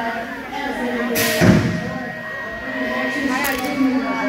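Voices of spectators talking around the track, with one sudden loud thump about a second and a half in.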